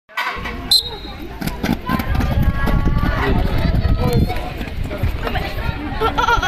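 A short, sharp, high whistle blast less than a second in, the signal that starts the race, followed by people talking and calling out over a low rumble.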